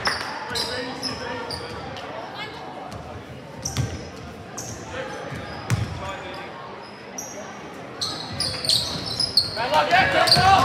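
Basketball bouncing on a hardwood gym floor a few separate times, with short high sneaker squeaks, in a large echoing hall with crowd chatter behind. The squeaks grow busier near the end as play starts up again.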